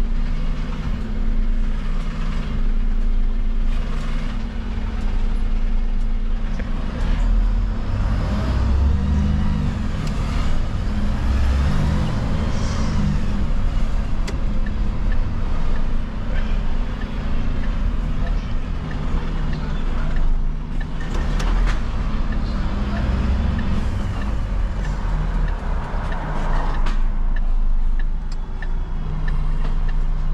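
Diesel engine of a refuse collection truck running as it drives, heard from inside the cab, its low note rising and falling as it speeds up and slows.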